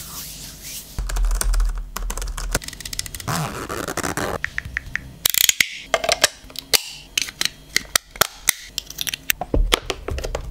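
Close-up handling sounds of plastic microphone gear: soft rubbing and brushing, then from about halfway a quick, irregular run of sharp plastic clicks and snaps as a shock-mount part and a hard carrying case are handled.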